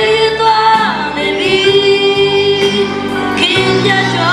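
Two boys singing a gospel song as a duet, holding long notes.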